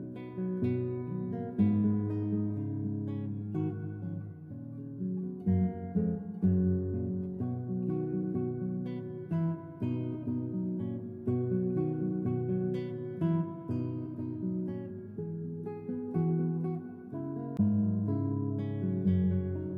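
Background music of plucked acoustic guitar, with chords changing every second or so.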